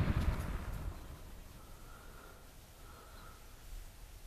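Patton HF-50 fan heater's fan spinning down after being switched off: the running noise fades away over the first second or so, leaving a faint low hum.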